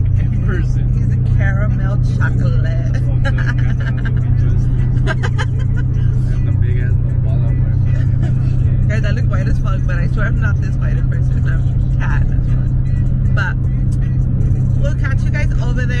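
Steady low drone of a car driving, heard from inside the cabin, with voices and music over it.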